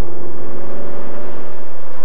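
A car, shown as a red Volvo 850 GLT, driving past at speed: a steady engine hum over road noise, fading near the end.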